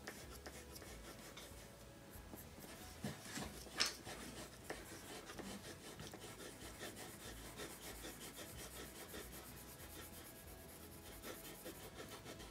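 Two colored pencils shading on paper in quick, short back-and-forth strokes, a faint continuous scratching. A brief sharp tap about four seconds in.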